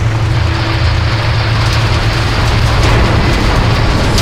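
Steady rushing rumble of tumbling stone aggregate over a low, steady machine drone. This is a sound-design effect for an animated asphalt mixing plant rather than a field recording, with faint music underneath.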